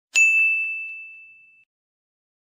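A single bright, bell-like ding struck once just after the start, ringing on one clear high note and fading away over about a second and a half.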